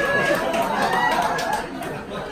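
Audience laughing and chattering after a punchline, the mix of many voices dying down.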